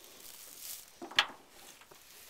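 Mostly quiet, with faint rustling and one short, sharp click a little past a second in.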